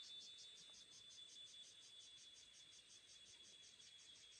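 Insects chirring faintly: a steady high whine with a rapid, even pulsing trill of about eight pulses a second.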